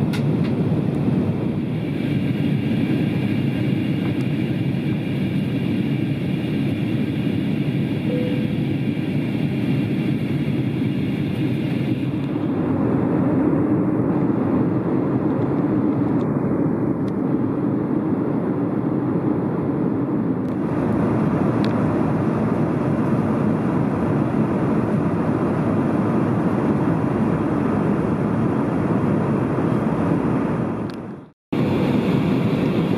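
Steady cabin noise of an Airbus A320 in flight: a constant rush of air and engine noise, heaviest in the low range, with a faint high whine over it at first. The noise changes character abruptly twice, about twelve and about twenty seconds in.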